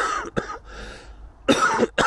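A man's short laugh, then a single harsh cough about one and a half seconds in.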